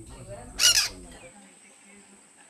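A single loud, harsh bird squawk about half a second in, short and shrill, over low voices.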